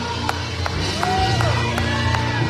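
Live gospel praise music: a band with sustained keyboard bass and a fast steady beat of about three strikes a second, with singers' voices rising and falling over it.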